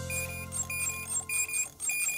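Cartoon sound effect of short electronic beeps, about two a second, as a spanner turns a bolt, over a low musical chord that fades away.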